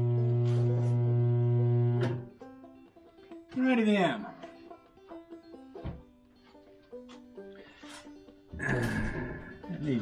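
Welder humming steadily and cutting off about two seconds in, as the weld is finished. Music with singing follows.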